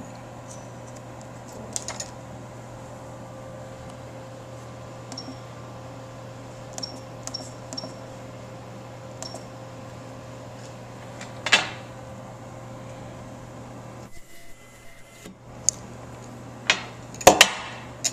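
Sonics ultrasonic welder's control unit giving a few short high beeps from its keypad as the weld time is set, over a steady low hum. A loud knock comes about halfway through and a cluster of sharp clicks near the end.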